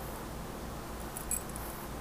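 Fingernail slowly tracing over a textured woven fabric: faint, soft scratching strokes, with a brief sharper scratchy cluster just past a second in. A steady hiss and low hum sit underneath.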